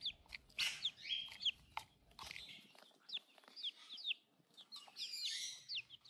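Young chicks peeping: a string of short, high chirps, each falling in pitch, with a brief lull in the middle.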